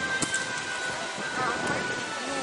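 Indistinct voices and music mixed over a steady hiss of background noise, with no clear words.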